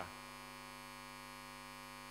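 Steady electrical mains hum: a constant low buzz made of many evenly spaced tones, unchanging in level.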